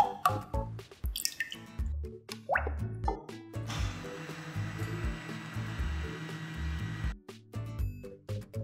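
Background music with a steady beat. In the first second or so liquid lye solution trickles through a small mesh strainer into the oils. Then a stick blender runs steadily for about three seconds, blending the lye into the soap oils, and stops.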